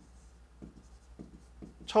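Stylus writing on an interactive display screen: a run of faint short taps and scratches as a word is written.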